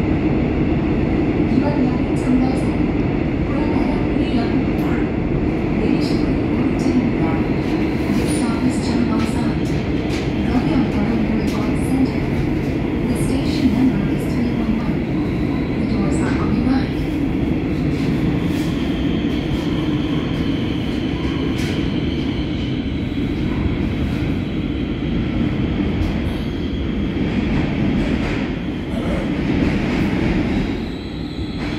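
Interior running noise of a Korail Line 3 electric subway car (Woojin-built, IGBT-inverter trainset 395) travelling through a tunnel: a steady loud rumble of wheels on rail with scattered clicks and knocks. A high thin whine joins in about two-thirds of the way through.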